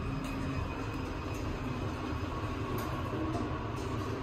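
Modernized Otis elevator car running, a steady low rumble with a few light clicks.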